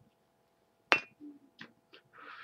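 A cigarette lighter gives a single sharp metallic click with a short ring about a second in, just after a cigarette has been lit. A few faint soft sounds follow.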